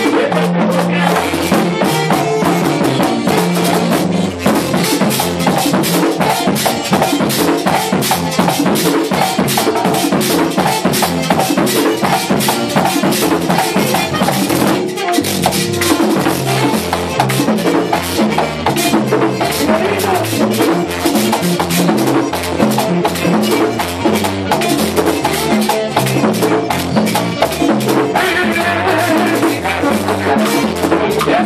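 Live amplified band playing Latin dance music with a steady, even beat: electric guitar, drum kit and rattling hand percussion, with a vocalist.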